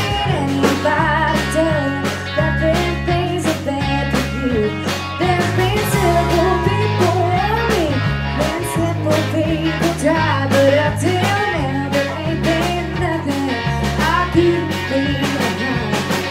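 Live rock band playing: a woman sings over electric guitar and electric bass, with a steady beat.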